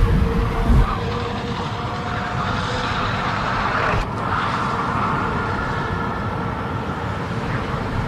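FPV racing drone flying fast, its motors whining over a steady rush of wind on the on-board microphone. There is a short click and a sudden change in the sound about four seconds in.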